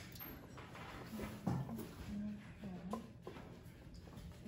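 Soft, low murmured hums of a person's voice, a few short rising and falling sounds, with a couple of faint light knocks.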